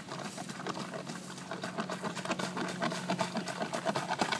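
Long-handled plunger pumped rapidly up and down in a flooded sewer cleanout, a fast run of many strokes a second with water splashing and sloshing in the pipe: plunging to clear a stopped sewer line.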